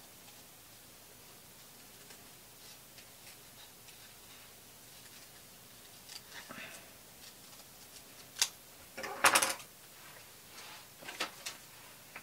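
Small scissors cutting a paper cut-out backed with thin cardboard. The first half is almost silent, then come faint snips, a sharp click a little after the middle, a louder rasp of cut card, and a few more light clicks near the end.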